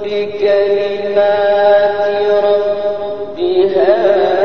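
A man's voice chanting a Quran recitation, holding one long steady note for about three seconds. Near the end his voice moves to a new pitch and bends.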